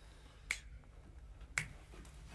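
Two quiet finger snaps about a second apart, over a faint low hum, in the sparse opening of a recorded song.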